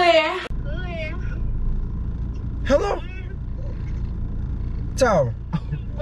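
Car cabin rumble of the engine and road while driving, steady under a few short voice sounds that slide up and down in pitch.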